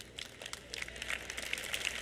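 Scattered audience clapping that starts faintly and thickens into applause.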